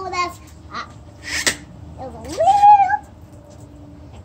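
A young child's voice: one wordless call about two seconds in that rises and then holds high, with a short breathy hiss a little before it.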